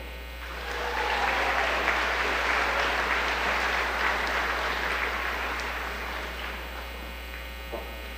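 Audience applause for a graduate crossing the stage, building about half a second in, holding steady, and fading out near the end.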